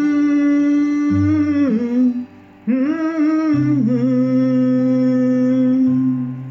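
A man humming long, held notes of a melody over a fingerstyle acoustic guitar, whose low bass notes ring underneath. The humming breaks off for a moment about two seconds in, then resumes.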